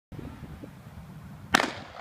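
A starter's pistol fires once, a sharp crack about one and a half seconds in with a short ring-out, signalling the start of the race.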